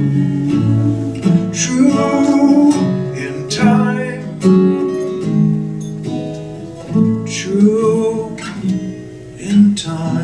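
Acoustic guitar played solo, sustained notes punctuated by a handful of sharp strums, in an instrumental passage between sung lines.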